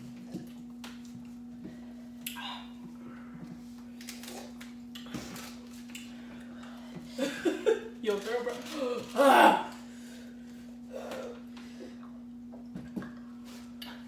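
A steady low hum with a few faint clicks and taps, broken by a burst of people's voices about seven seconds in, loudest just after nine seconds, then dying away.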